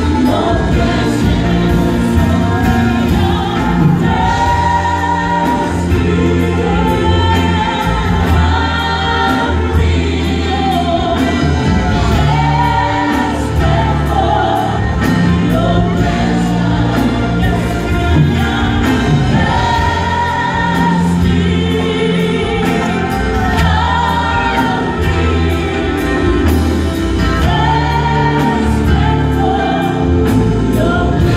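A worship team of several singers performing a gospel song in harmony over microphones, backed by a live band with drums and keyboard, amplified in a large hall.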